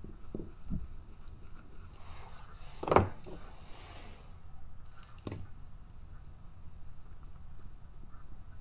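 Hand tools being handled and set down on a work table: a sharp knock about three seconds in, a softer knock about two seconds later, and a few light taps and handling noises between.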